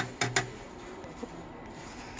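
JUKI DDL-9000C industrial lockstitch sewing machine clicking twice in quick succession as the reverse button on its head-mounted switch panel is pressed, followed by a faint steady hum from the idle machine.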